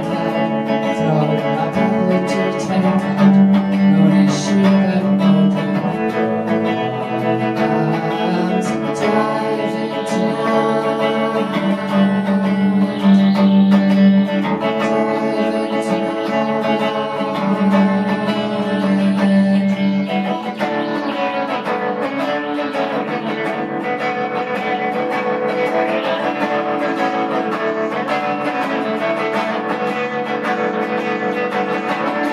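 Live indie band playing a song: electric guitar with a singing voice. The heavier low part drops away about two-thirds of the way through, leaving a lighter guitar texture.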